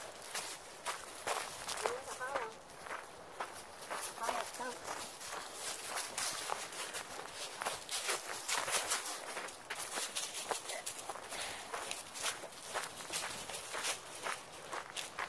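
Footsteps crunching through dry fallen leaves, a dense, irregular run of steps.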